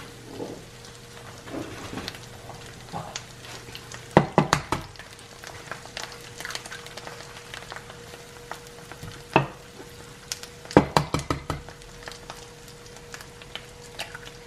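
Chorizo and onion sizzling in a frying pan, with a faint steady hum beneath. Clusters of sharp taps come about four seconds in, again near nine seconds and around eleven seconds, as eggs are cracked and dropped into the pan.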